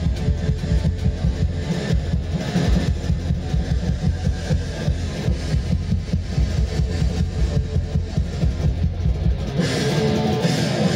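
Live rock music led by a drum kit played at a fast, steady beat, heavy in the low end.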